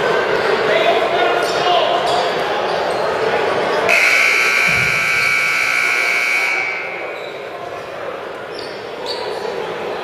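Gymnasium scoreboard buzzer sounding one steady high-pitched blast of about two and a half seconds, starting about four seconds in, signalling the end of a timeout. Before it, a crowd chatters in a large echoing gym.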